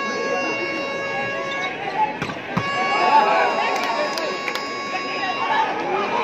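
Spectators' voices and shouting through a volleyball rally, over a steady high tone with many overtones that breaks off and starts again. There are two or three sharp hits about two seconds in.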